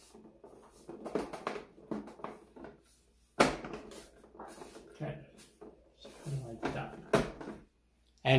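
Plastic housing sections of a Roomba S9 self-emptying base being pushed and fitted together by hand: a run of plastic clicks, knocks and rubbing, the loudest a sharp knock about three and a half seconds in.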